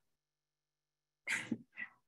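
Near silence, then about a second and a quarter in two short vocal bursts, the first louder than the second.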